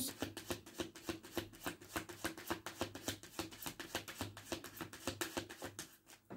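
A deck of tarot cards shuffled by hand: a quick, even run of soft card clicks that stops near the end.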